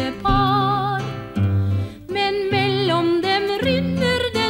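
A singer performing a Norwegian broadside ballad (skillingsvise) with plucked guitar accompaniment, the held notes sung with a marked vibrato, with a short break between phrases about two seconds in.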